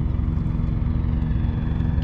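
A steady low engine hum with a constant rumble underneath, unchanging throughout.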